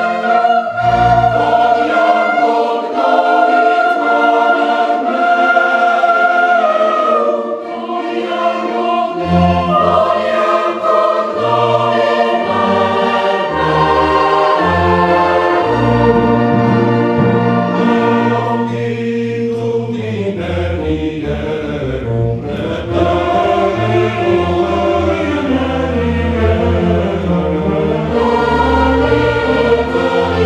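Mixed choir singing with an orchestra of violins and clarinets accompanying. Low bass notes join about nine seconds in.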